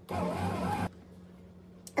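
A brief rush of noise lasting just under a second, then a faint steady low hum, and a sharp click near the end as the lid of a Sunbeam bread machine is released and lifted.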